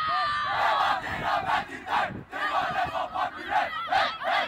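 A football team's players chanting together in a huddle: one long group shout, then rhythmic shouted calls about two or three a second.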